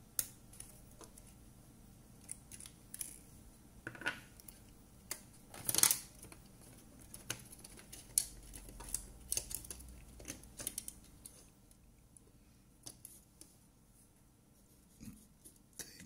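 Small clicks and handling noises from taking parts out of an opened plastic FPV goggle housing. The clicks are scattered and irregular, with the loudest a little before six seconds in.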